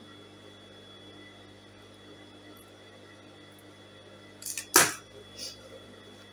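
Faint steady hum of a quiet room, then about four and a half seconds in a brief clatter of metal dressmaking scissors being set down on the sewing-machine table, with a fainter knock just after.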